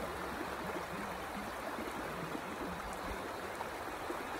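A creek flowing, a steady, even rush of water.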